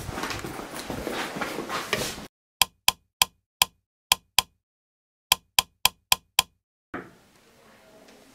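Background noise that cuts off abruptly about two seconds in, then eleven sharp clicks of a wall toggle light switch being flipped, in two quick runs of six and five, as a deliberate pattern.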